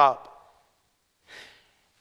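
A man's spoken word trails off, then a pause and a short, soft intake of breath about a second and a quarter in.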